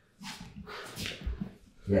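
Strained breathing and short effort grunts from a grappler lifting a training partner loaded across his back. A soft low thump comes about a second and a quarter in.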